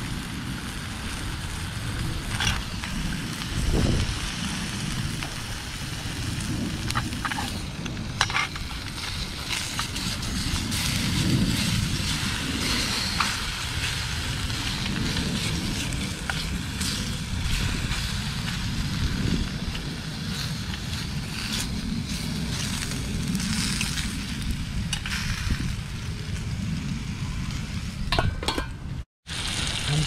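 Bacon sizzling in a stainless steel frying pan with a little added oil, crackling steadily, with occasional clicks of a metal fork turning the rashers against the pan. An uneven low rumble runs underneath, and the sound drops out for a moment near the end.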